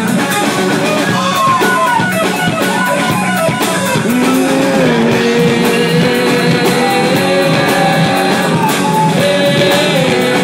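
Live rock band playing loud: electric guitars over a drum kit, with a held melody line on top that slides between notes.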